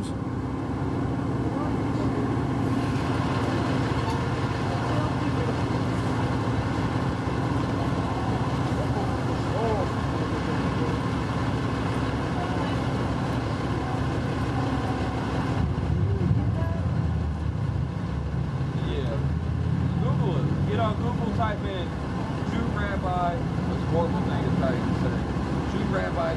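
Steady low rumble of city traffic, with transit buses idling at the curb. Faint voices talking are heard over it in the second half.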